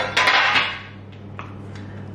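A stainless steel mixing bowl handled on a kitchen counter: a sharp metallic knock, then about half a second of scraping clatter as it is picked up, and a faint tick about a second later, over a steady low hum.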